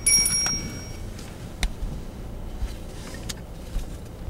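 Inside a car as it backs out of a garage: a steady, high electronic chime tone sounds for about the first second. After that the engine runs low under a few light clicks and knocks.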